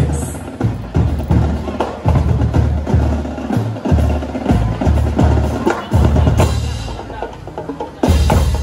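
Brass marching band (banda) playing, with a steady bass-drum beat about twice a second under snare drums and low brass.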